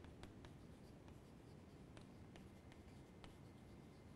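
Chalk writing on a chalkboard: faint, irregular taps and scratches of the chalk stick as letters are written.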